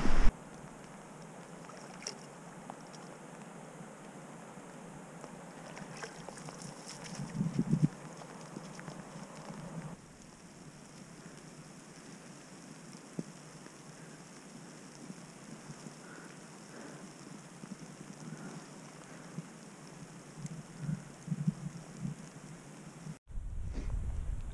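Steady wind noise outdoors on open ground, with a few louder low bumps about seven to eight seconds in. The level drops a little about ten seconds in and cuts off sharply just before the end.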